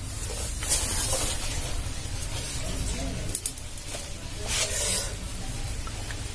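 Dry, rustling scrapes as a moth orchid's dried-out roots are handled among chunks of charcoal potting medium, in two or three short hissy bursts over a low steady rumble.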